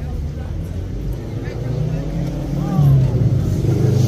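A motor vehicle's engine running close by, a low rumble that grows louder about three seconds in, with people's voices faintly in the background.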